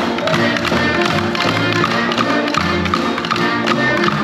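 Drumsticks tapping in rhythm on practice pads, played by several players together over recorded backing music with a bass line.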